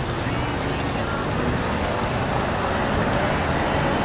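Steady road traffic noise from cars on a town street, a constant rushing hum.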